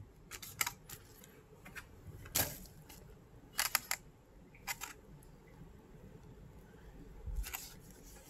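Stiff clear plastic packaging around a leather phone case clicking and crackling as it is handled: a string of short, sharp clicks at uneven gaps, the loudest about two and a half seconds in.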